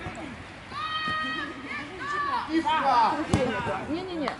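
Footballers' voices shouting across an open pitch, with one long high call about a second in. A single sharp thud of a ball being struck comes about three seconds in: a shot on goal.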